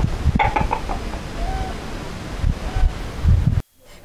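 Domestic hens clucking a few short times over a steady low rumble of farmyard background. The sound cuts off abruptly near the end.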